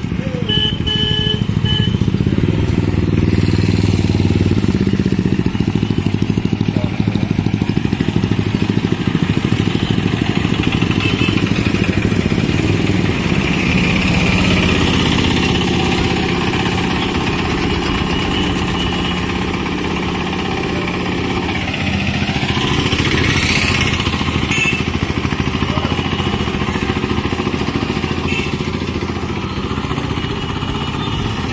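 Busy street traffic heard from a bicycle moving through it: motorcycle and auto-rickshaw engines run steadily and close by. A brief high tone sounds about a second in.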